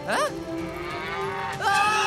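A cow mooing in a cartoon: one long, drawn-out moo that starts about a second and a half in.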